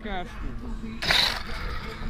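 A person's voice, short and bending down in pitch, over a steady low outdoor background, with a brief rushing noise about a second in.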